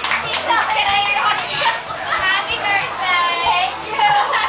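A lively crowd talking and calling out over one another in a noisy room, with several high-pitched voices shouting.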